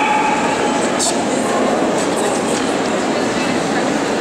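Steady din of a crowded indoor exhibition hall: many people talking at once, blurring into one continuous noise. A short click comes about a second in.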